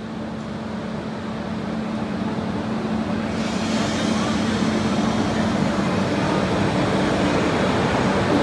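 Electric goods locomotive moving slowly up to a passenger coach to couple on, its steady hum growing louder as it closes in. A hiss joins about three and a half seconds in.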